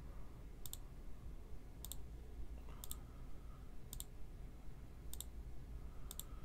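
Computer mouse button clicked five times, about once a second, each a quick press-and-release double tick. It is re-running an online list randomizer over and over.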